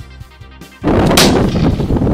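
A single loud shot from a .50-calibre flintlock rifle loaded as a shotgun with copper-coated BBs over 2F black powder, going off about a second in and rumbling on for over a second.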